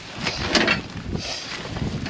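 Black plastic garbage bag rustling and crinkling as a gloved hand digs through it, loudest about half a second in and again a little past the middle, over wind buffeting the microphone.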